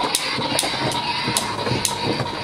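Mock gunfire: a string of sharp cracks, roughly two a second and unevenly spaced, over a steady rushing noise.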